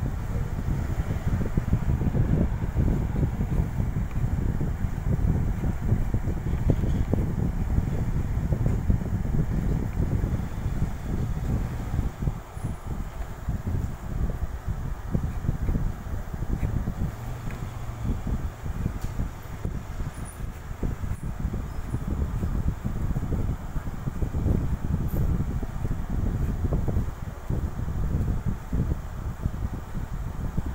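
Air buffeting the microphone: a continuous low rumble that flutters rapidly in strength, with no distinct events.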